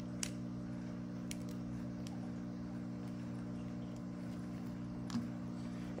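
A few faint clicks of small pebbles being set by hand into a plastic cup around a plant stem, over a steady low hum.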